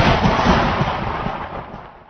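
A boom-like impact sound effect decaying away, its low rumble fading steadily until it has nearly died out near the end.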